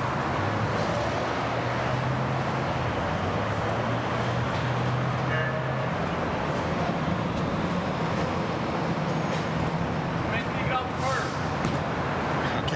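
Steady rumble of road traffic and idling vehicle engines, with a low engine hum running throughout that shifts up in pitch about halfway through. Faint voices come in near the end.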